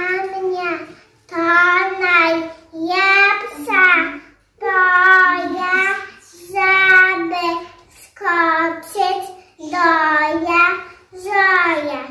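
A young girl singing alone without accompaniment, in short phrases of about a second with brief pauses between them.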